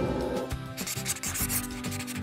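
Marker rubbing and scratching on a whiteboard in a few short strokes as a word is written.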